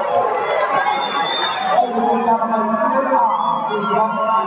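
Large arena crowd: many spectators talking and shouting over one another.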